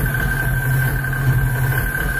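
Live electronic music played on synthesizers: a loud low drone that swells and dips, with a steady high-pitched tone held above it in a noisy wash.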